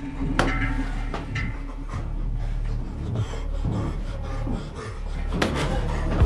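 A steady low drone, with a sharp click about half a second in and a louder one near the end.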